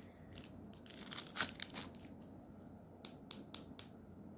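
Plastic crinkling and crackling as a 3 cc syringe and a small plastic vitamin ampoule are handled, loudest about a second and a half in. Near the end comes a quick run of about five sharp plastic clicks.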